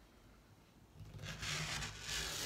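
Rotary cutter rolling through layered flannel against a cutting mat along a ruler edge, a rasping rub that starts about halfway in; the blade is dull and due for replacement.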